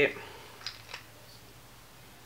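Two light clicks about a third of a second apart: the cap being put back on a bottle of liquid foundation.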